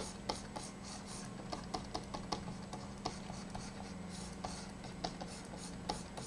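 Faint, irregular clicking and short scratchy strokes of a computer pointing device being dragged across a desk surface while brush strokes are painted, over a low steady hum.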